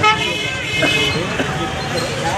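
Busy street sound: a vehicle horn gives a short toot right at the start, then people talking over traffic noise.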